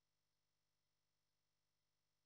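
Silence: the audio track is practically empty, with only a very faint, unchanging electronic noise floor.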